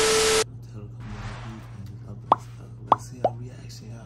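TV-static transition sound effect, a loud hiss with a steady beep, cutting off suddenly about half a second in. Then a low steady hum with three quick popping sounds near the end.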